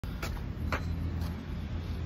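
Two sharp taps from a hand handling the phone camera as it is set in place, over a steady low rumble.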